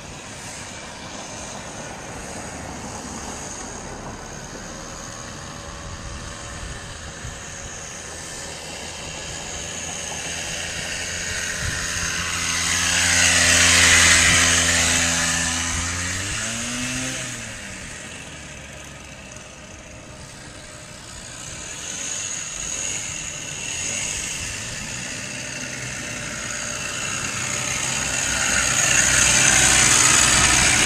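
Bike Bug two-stroke bicycle motor running as the bike rides up and past, its pitch dropping as it goes by about halfway through, then fading. It grows loud again near the end as the bike comes back close.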